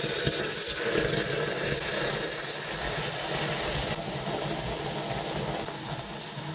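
Piranha solution (sulfuric acid and hydrogen peroxide) bubbling and fizzing violently as more peroxide is poured in, the chicken's carbon being turned into CO2 gas. A steady rough rumble and fizz that starts suddenly and eases a little near the end.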